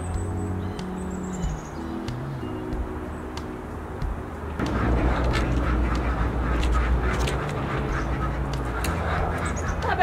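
Ducks quacking over background music; the quacking gets louder and busier about halfway through, as the poultry shed door is opened.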